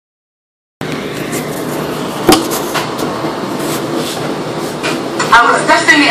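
Handling noise from a phone camera being moved and set up, a steady rubbing hiss with a few clicks and one sharp knock about two seconds in. A man starts talking near the end.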